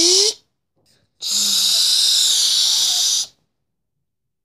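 A child's mouth-made fight sound effects: a short breathy whoosh whose pitch rises, then after a second's pause a long hissing "shhh" of about two seconds that stops suddenly.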